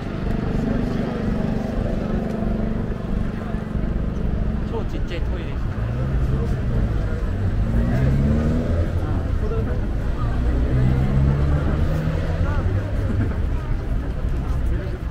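Traffic at a busy city crossing: vehicle engines running with a low drone, one rising in pitch about six to nine seconds in as it pulls away, under the voices of pedestrians crowding across.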